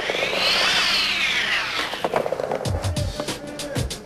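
Skateboard wheels rolling across a wooden vert ramp, a rushing sound that swells and then fades over about two seconds, with music behind it. Toward the end comes a quick run of knocks and thumps.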